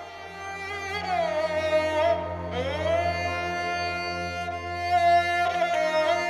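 Background score music: a slow melody of long held notes that glide gently in pitch, over a steady low drone.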